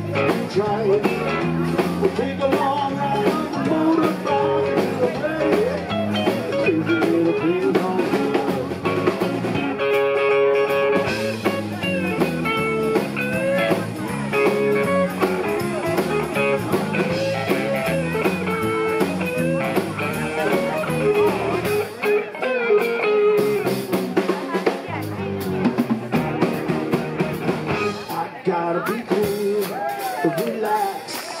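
Live rock band playing, with electric guitar, bass and drum kit; the low bass drops away for a few seconds past the middle before coming back.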